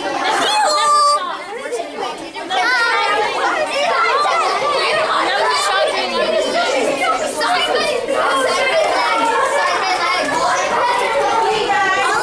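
A crowd of children talking at once: overlapping chatter with no single voice clear, with one high voice standing out about a second in.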